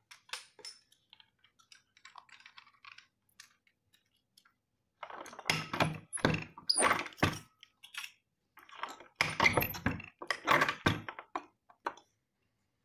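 Hand-lever button-badge press at work: light clicks as the badge parts are laid in, then two runs of loud metal clunks and clacks as the handle is pulled down to press the badge and the die base is swung round.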